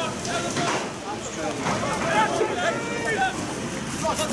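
Spectators talking close to the microphone, words unclear and sometimes overlapping, over a steady hiss.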